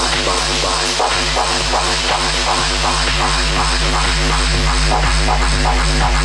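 Tech house DJ mix playing: a steady deep bass held under a fast, evenly repeating percussion pattern.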